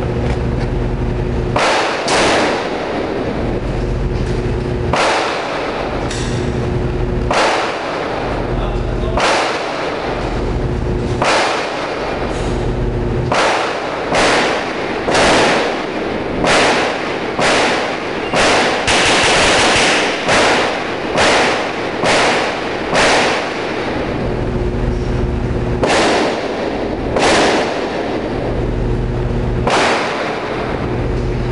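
Handgun shots echoing off the concrete of an indoor range: about two dozen sharp reports, most half a second or more apart, bunching densely about two-thirds of the way through, with two more near the end. A steady low hum fills the gaps between shots.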